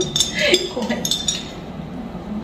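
Glassware clinking: glasses of ice and a small glass jug knocking together, several light, ringing clinks in the first second and a half.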